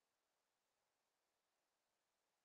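Near silence: only a very faint, even hiss.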